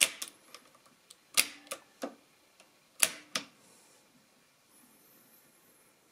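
Keys on the keyboard of a Mercedes-Euklid Model 29 mechanical calculator being pressed and released: about six sharp clicks spread over the first three and a half seconds, the loudest at the start, about one and a half and three seconds in, then quiet.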